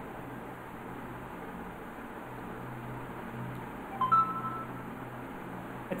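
Steady low hum and hiss of the recording line during a pause with no speech, with one short two-note electronic tone, stepping up in pitch, about four seconds in.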